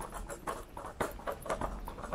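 Small scooter wheels clattering and rattling over cobblestones: an irregular stream of quick knocks, several a second.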